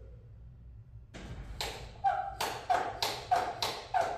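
Footsteps on the spray booth's metal floor grating: a quick run of sharp knocks, about three a second, starting about a second in, some followed by a brief ring.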